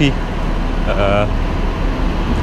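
A steady low rumble with a short spoken sound about a second in.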